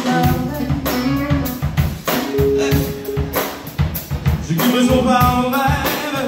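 A live funk band playing: drum kit keeping a steady beat under bass, electric guitar and keyboard, with the bassist singing lead.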